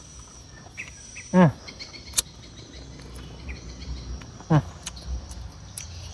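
Steady high-pitched chirring of insects, with a man giving two short appreciative 'hmm' sounds while eating a fruit, about a second in and again near the end. A sharp click comes about two seconds in.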